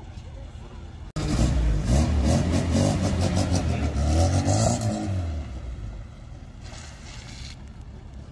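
A classic Mini stunt car's engine revving hard as the open-topped car drives past close by, starting abruptly about a second in, loudest around four seconds in, then fading as it pulls away.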